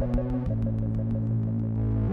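Deep electronic drum and bass played live on a Korg Electribe groovebox: a deep sustained bass that changes note about half a second in, under a fast run of ticks, about eight a second, that fades away near the end.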